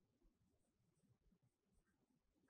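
Near silence, with the faint sound of a marker pen writing on a white board.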